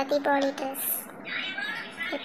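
A high-pitched voice speaking in short syllables of nearly level pitch.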